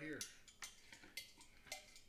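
Racking cane being worked in the neck of a glass jug of mead to start the siphon: about four faint, sharp clicks and clinks, roughly half a second apart.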